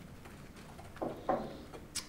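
Quiet room tone, broken about a second in by two short, faint vocal sounds from a man and a single sharp click near the end.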